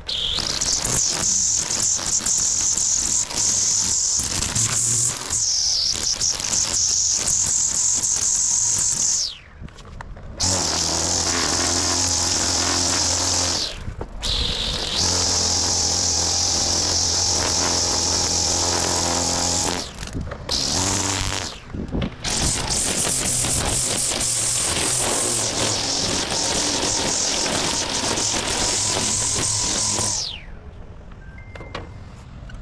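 String trimmer running, a steady high whine as it trims grass along a sidewalk edge, broken by several abrupt cuts of a second or less.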